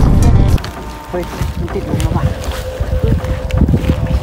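Wind buffeting the microphone for about half a second, then cutting off suddenly, leaving lighter wind noise.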